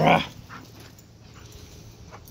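A man's short laugh at the very start, then quieter, faint scuffling of dogs playing close by.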